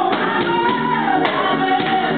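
A small gospel choir singing in harmony, the voices holding long notes that slide gently in pitch.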